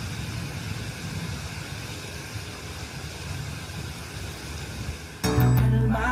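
Intro of a recorded rap song: a steady rushing noise, then about five seconds in the music comes in, louder, with bass notes and a beat.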